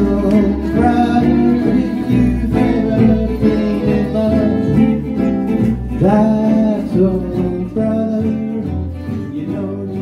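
String swing band playing live: bowed fiddle over two strummed acoustic guitars and upright double bass. A note slides up in pitch about six seconds in, and the music grows quieter near the end.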